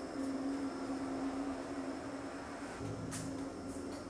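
Quiet kitchen room tone with a steady low hum, and a few faint clicks about three seconds in.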